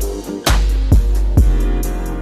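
Instrumental hip-hop beat with no vocals: kick drum hits about every half second over a sustained bass and keyboard chords, with a snare on the first hit.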